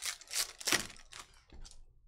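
Foil trading-card pack being torn open and crinkled in the hands: a run of crackly rustles, loudest a little under a second in.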